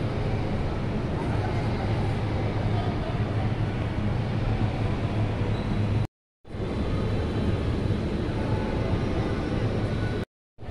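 Steady room tone of a busy museum gallery: a constant low hum under a noisy background, with faint indistinct voices of visitors. The sound cuts out completely for a moment about six seconds in.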